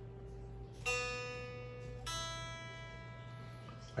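Electric guitar through a clean amp, single strings plucked one at a time for tuning: a note fading out, then a new string plucked about a second in and another about two seconds in, each left to ring and die away.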